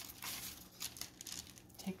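Faint rustling and crinkling of the paper-and-foil wrapper of a crescent roll dough tube as it is peeled away and handled.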